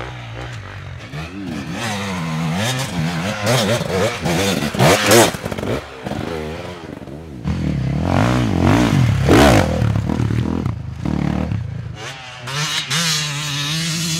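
Enduro dirt bike engines revving hard and easing off again and again, the pitch climbing and falling as the throttle opens and closes on a rough climb.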